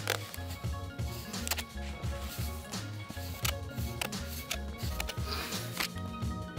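Background music with a steady beat: regular low bass pulses, held tones and sharp percussive hits.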